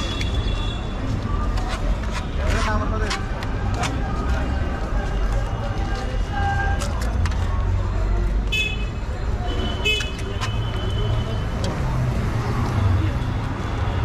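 Busy street ambience: a steady low traffic rumble with background voices, scattered light clicks, and a few short high tones about two-thirds of the way through.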